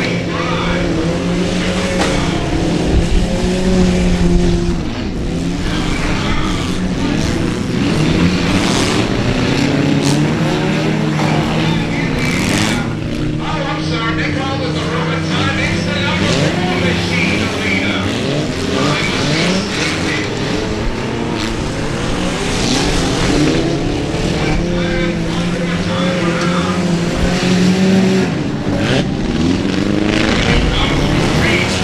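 Several stripped street-sedan race cars running hard at once, their engines overlapping, with the pitch rising and falling as they accelerate and lift through the corners.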